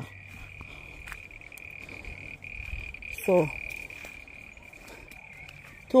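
A small animal calling outdoors: one steady, unbroken high-pitched drone that does not change in pitch.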